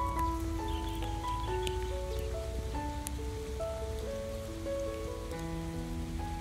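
Wood campfire crackling with scattered small pops, over background music of slow, held notes.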